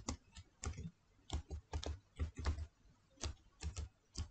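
Computer keyboard being typed on, an irregular run of short key clicks with brief pauses between words.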